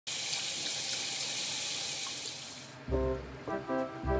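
Water spraying from a pull-out shower head into a filling inflatable baby bath, a steady hiss that cuts off suddenly about three seconds in. Background music with a deep bass then starts.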